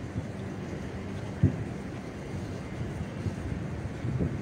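Steady low outdoor background rumble with no clear pitch, with one brief low thump about a second and a half in.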